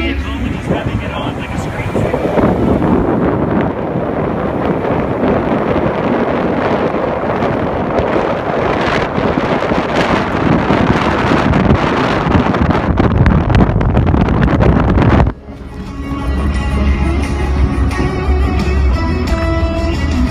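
Wind rushing and road noise from a vehicle driving a dirt road with the window open, music playing faintly underneath. About fifteen seconds in, the rush cuts off abruptly and the music is heard clearly.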